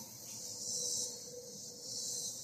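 A faint, steady, high-pitched chorus of insects in summer woodland, swelling gently, with a faint steady hum beneath it.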